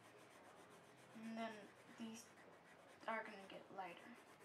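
Colored pencil rubbing faintly on paper as a drawing is coloured in. Short bits of a voice come in about a second in and again near the end.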